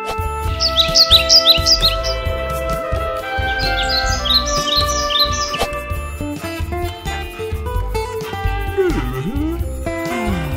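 Background music with sustained notes and plucked guitar-like sounds over a pulsing bass, with two runs of quick, high bird-like chirps, one about half a second in and another about four seconds in. Near the end a sound falls and then rises in pitch.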